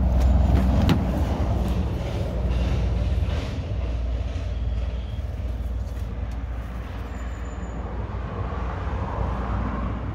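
Steady low rumble of a vehicle engine running, with a few knocks in the first second.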